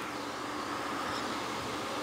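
A steady hiss with a faint hum under it, the recording's background noise in the gap between two commercials.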